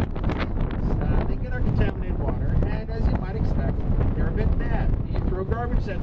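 Wind rumbling on the microphone over the steady drone of a moving tour boat on open water, with a person's voice talking through it.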